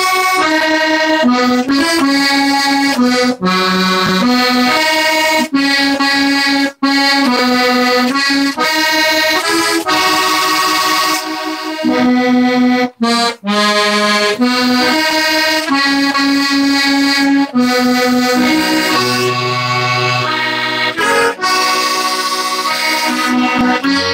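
A small accordion played solo: a tune of changing melody notes over held chords, with a few brief breaks between phrases and some lower bass notes near the end.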